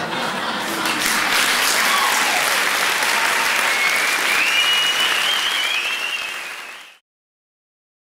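Theatre audience applauding, with a high wavering tone rising over the clapping in the second half. The applause fades and cuts off abruptly about seven seconds in.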